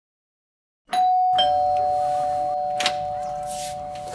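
A two-note ding-dong chime: a higher note about a second in, then a lower note half a second later, both ringing on and slowly fading.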